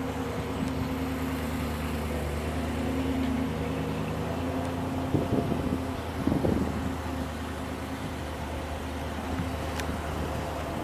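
A car engine idling: a steady, even low hum, with a few brief bumps and a short voiced 'oh' about halfway through.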